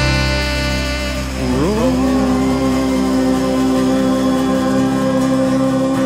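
Live jam-rock band music without vocals: a held chord, in which one note swoops down and back up about a second and a half in, then settles into a steady sustained tone.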